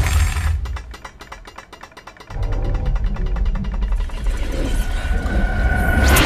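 Trailer sound design: a fast, even mechanical clicking, about fifteen clicks a second, comes through as the low score drops away. About two seconds in, a low rumble returns under fainter clicking, and a thin high tone swells near the end.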